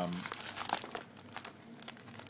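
Plastic packaging crinkling as it is handled and unwrapped, a run of irregular small crackles.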